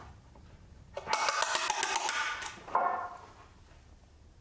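Pine boards handled and shifted against each other, wood clattering and scraping in a rapid run of knocks for about a second and a half, then one more knock.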